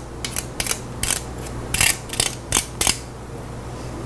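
Raw potato being grated by hand on a metal grater: a run of short scraping strokes, about eight in three seconds, then a pause.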